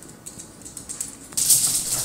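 Fast, dry rattling percussion like a shaker, starting faint and growing much louder about one and a half seconds in.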